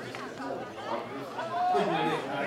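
Indistinct chatter: several spectators' voices talking over one another, with no clear words.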